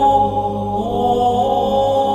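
Low voices chanting on long, held notes, with the pitch moving up about a second in.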